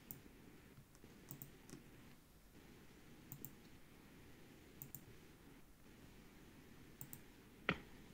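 Computer mouse clicks, mostly in quick pairs, every second or two over faint room hiss, with a louder knock near the end.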